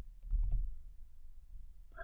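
A few computer keyboard keystrokes, clicking in the first half-second, as the brackets are typed at the end of a line of code.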